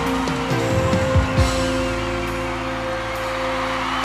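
Background music: long held notes over a low bass line, with a few low drum hits.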